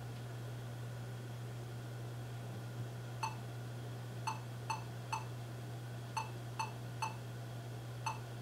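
Lenovo ThinkPad T460 power-on beep code: short, identical beeps in a 1-3-3-1 pattern, one beep, a pause, three beeps, a pause, three beeps, then a final single beep right at the end. On ThinkPads this pattern is a memory error code, and memory is the first suspect here.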